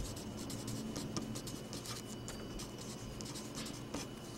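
Felt-tip pen writing on paper, a rapid run of short scratchy strokes as letters are written out.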